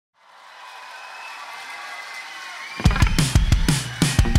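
Live electropop band music: a sustained synthesizer chord fades in, then about 2.8 s in a loud driving drum beat with deep kick drum and bass comes in.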